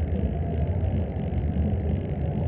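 A steady low rumble with no clear notes or strokes.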